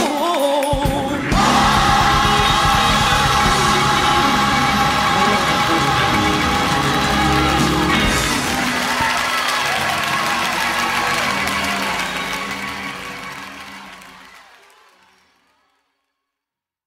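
The ending of a gospel song. A singer's last wavering phrase gives way about a second in to the band and voices holding a final chord, which fades out to silence near the end.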